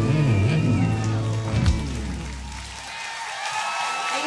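A live rock band with electric guitar ends a song on a final hit about halfway through, the last chord ringing out and fading. Near the end, the audience starts to cheer and whoop.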